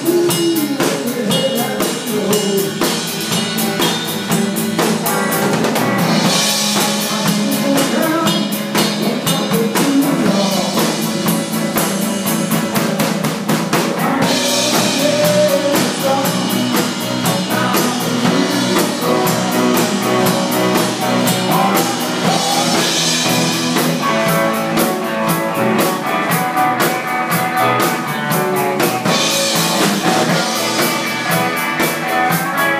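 A live band playing an instrumental passage: a drum kit keeps a steady beat under electric guitar, bass guitar and electric keyboard.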